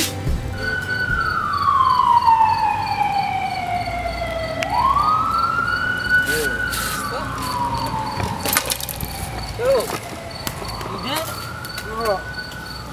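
An emergency-vehicle siren sounding a slow wail: each cycle falls gradually over about four seconds, then climbs quickly back up. A few sharp clicks come in the second half.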